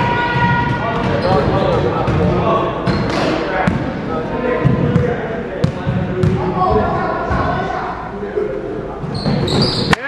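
A basketball bouncing several times on a hardwood gym floor as a player dribbles at the free-throw line, over voices talking in the gym.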